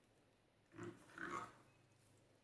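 Slime mixed with foam beads squelching twice as a spatula folds it, about a second in, after a near-silent start.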